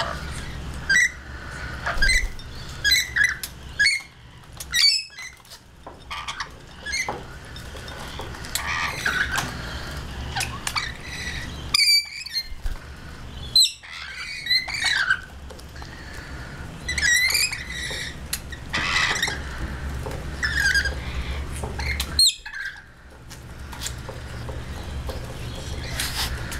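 Rainbow lorikeets squawking and screeching in short, separate calls as they crowd together at a shared feeding bowl, over a steady low hum.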